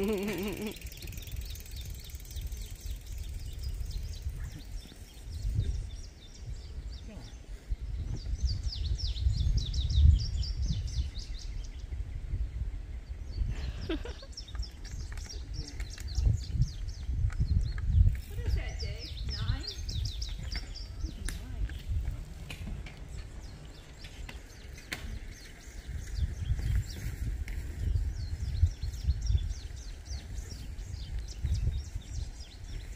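Wind buffeting the microphone in gusts, with a songbird singing quick trilled phrases of repeated high notes several times.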